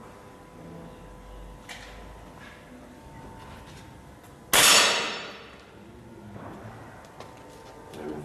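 Break-barrel air rifle firing a single shot about four and a half seconds in: a sharp crack that dies away over about a second.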